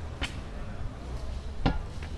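Street ambience in a pedestrian square, a steady low hum, broken by two short sharp knocks: a light one near the start and a louder one near the end.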